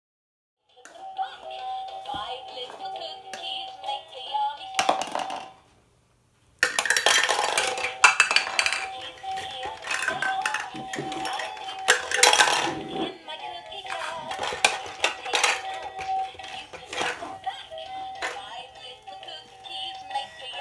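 Electronic musical shape-sorter toy playing its tinny tune with a synthetic singing voice, with plastic shape blocks clinking against it. The sound cuts out for under a second about six seconds in, then the song carries on.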